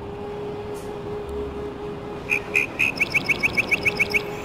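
A steady low held tone, then, a little over two seconds in, a bird starts a rapid run of sharp, high chirps, about six a second, which are the loudest sound here.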